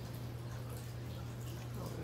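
A steady low hum with an even hiss, the room and recording noise floor, and a brief spoken "Oh" near the end.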